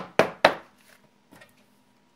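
Paper being handled at a desk: three quick, sharp rustles and taps in the first half second, then a fainter one past the middle.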